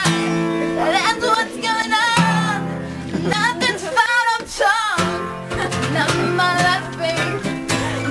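Acoustic guitar strummed in sustained chords, changing about every two to three seconds, with a woman singing over it.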